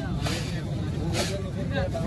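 People talking in the background over a steady low rumble, with two short scraping sounds, one near the start and one about a second in.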